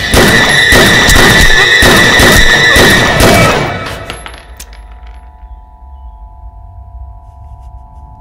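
Loud dramatic film-score sting with repeated percussion hits and a held high note for about three and a half seconds. It then fades into a quiet sustained drone of held notes.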